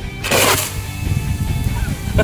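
Coke-and-butane bottle rocket blasting off from the hand: a loud spraying hiss lasting about half a second, starting a quarter second in, as trapped butane pressure forces the Coke out of the inverted bottle's mouth. Background music plays underneath.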